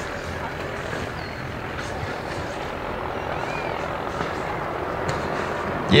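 A steady rushing noise with no clear pattern, holding an even level throughout.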